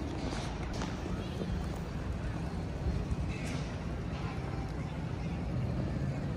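Busy city square ambience: a steady low rumble of traffic under indistinct chatter of passers-by, with a few faint clicks.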